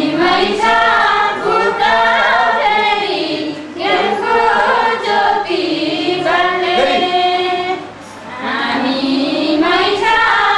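A group of women singing a Nepali song together, in sung phrases of about four seconds with short breaks between them.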